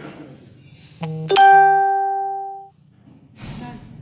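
A short two-note plucked tone: a brief low note about a second in, then a louder higher note that rings and fades for over a second before cutting off sharply.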